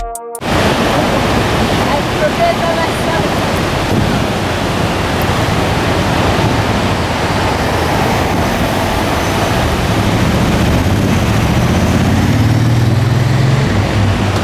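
Steady rush of a large twin waterfall heard from close by, with a low hum rising near the end.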